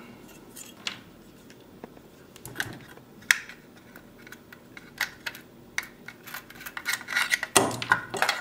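Small plastic smart-plug housing parts and a precision screwdriver being handled: scattered sharp clicks and light knocks, a few seconds apart at first and coming closer together near the end.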